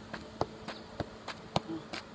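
Soccer ball kicked up again and again off the foot in freestyle juggling: a quick series of light thuds, about three a second, over a faint steady buzz.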